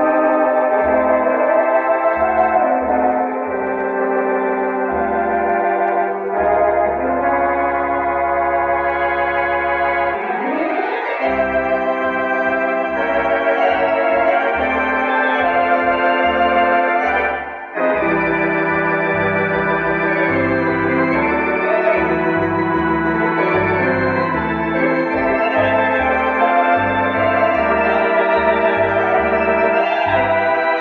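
Artisan electronic theatre organ playing sustained chords with vibrato over changing pedal bass notes, with a rising glide about ten seconds in and a brief break a few seconds before the middle.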